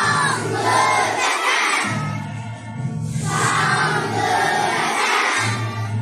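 A children's choir singing, many young voices together in sung phrases.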